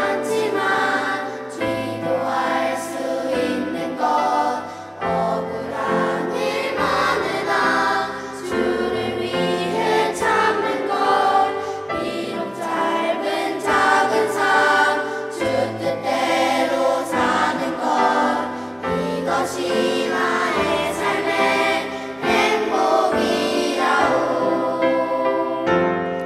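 Children's and youth choir singing a Korean gospel song together, accompanied by piano.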